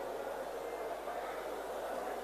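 Steady background noise of a large hall: an even hiss with no clear voices or distinct events.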